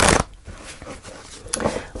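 Tarot deck being shuffled by hand: a quick riffle of the cards at the start, then scattered soft clicks and taps of the cards as the deck is gathered together.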